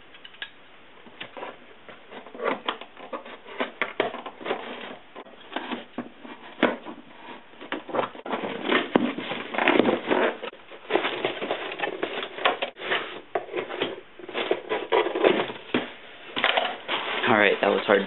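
Cardboard shipping box being opened by hand: irregular crackling, tearing and scraping as the taped flaps are pulled apart, busier in the second half.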